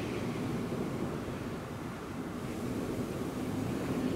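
Steady, fairly quiet seaside ambience: a low wash of wind and surf with a faint low hum underneath.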